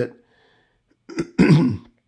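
A man clears his throat once, a short rough sound about a second in.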